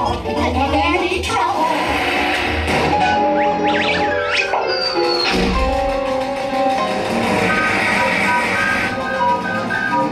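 Cartoon soundtrack of a ride's pre-show film played over theatre speakers: bouncy music with cartoon character voices and a few quick rising whistle-like sound effects midway.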